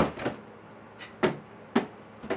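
Cardboard boxes set down one on top of another: a sharp thud at the start, then two more about a second and a quarter and a second and three quarters in.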